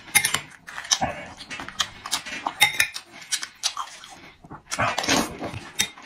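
Close-up eating sounds: wet chewing and lip smacks in quick irregular clicks, with a metal spoon scraping and clinking against a ceramic bowl of rice.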